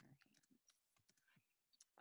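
Near silence with a few very faint clicks of typing on a computer keyboard.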